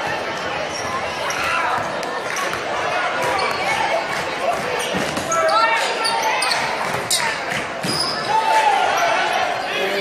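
Basketball game in a gym: a ball bouncing on the hardwood court amid shouting voices from players and spectators, echoing in the large hall. Voices rise in loud calls about halfway through and again near the end.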